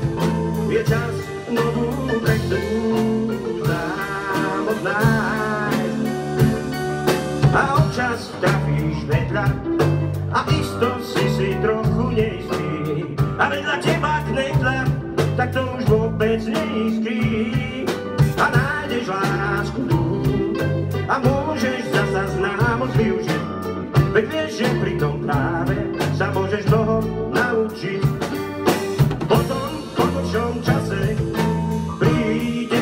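A live band playing a song with acoustic guitars, electric bass guitar and drum kit, in a steady groove with a moving bass line.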